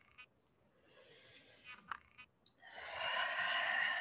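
A woman breathing in time with a yoga rotation: a soft breath in about a second in, then, past halfway, a long, loud exhale through the open mouth as she leans forward.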